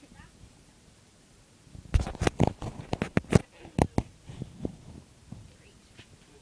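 A quick flurry of sharp knocks and thumps, about ten in two seconds, starting about two seconds in, then fainter scattered rustling.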